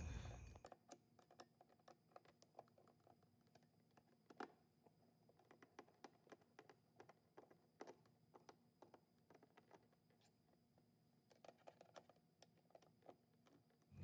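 Near silence with faint, irregular light clicks: small screws and a hand tool being handled while fastening a chrome rack to a scooter.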